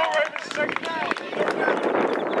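Overlapping shouts and calls from several children and adults, with a few short taps and knocks scattered among them.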